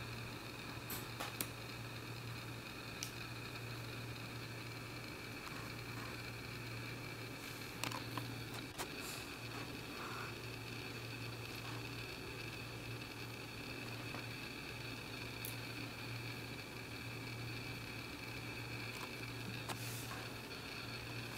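Scissor-style cat nail clippers snipping a cat's claws: a few sharp, irregularly spaced clicks over a faint steady hum.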